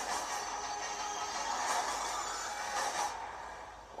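Film-trailer soundtrack playing through speakers: a dense, noisy action sound-effects bed with music under it. It swells twice and fades toward the end.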